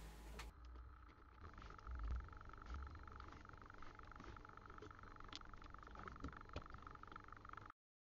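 Faint handling sounds of a circuit board being fitted into a plastic synthesizer case: a few soft bumps, then light clicks and taps, over a faint steady high hum.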